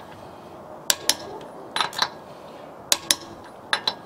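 Sharp metallic clicks in four pairs, about a second apart, from a half-inch drive Craftsman torque wrench and socket being worked on a wheel's lug nuts. The owner says the wrench is malfunctioning.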